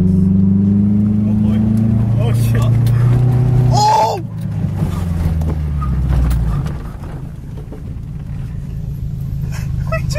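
Car engine held at high revs from inside the cabin as the car slides off the road across grass; the engine note drops away about four seconds in. A rough low rumble of the car over uneven ground follows, in a near-rollover the occupants thought would flip the car. A brief shout comes at about four seconds.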